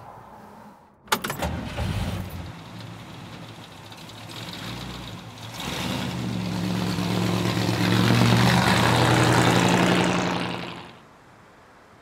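Engine of a 1940s car running as the car drives by, with a sharp click about a second in. The engine grows louder, holds, then fades away near the end.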